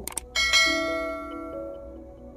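A short click, then a bell-chime sound effect that rings once and fades over about a second and a half, the notification-bell sound of a subscribe-button animation. Soft background music continues underneath.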